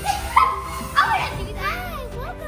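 Children's high-pitched shouts and squeals, several short rising-and-falling cries with the loudest about a second in, over steady background music.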